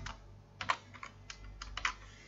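Faint typing on a computer keyboard: a short run of about seven quick keystrokes, starting about half a second in.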